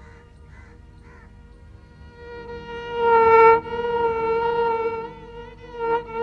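Background music: a long held melodic note that swells in about two seconds in, is loudest around three and a half seconds, then carries on with a wavering pitch.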